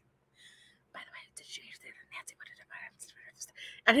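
A woman whispering softly and unintelligibly in short rapid bursts, mimicking Rice Krispies gossiping and telling secrets.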